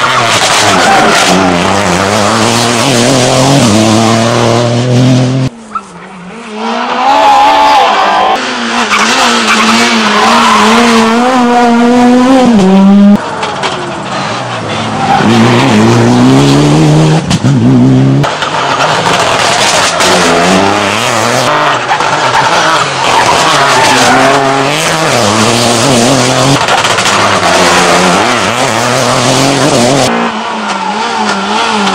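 Rally cars driven hard one after another, engines revving high and climbing in pitch with repeated stepped drops at gear changes. There is a brief lull about six seconds in.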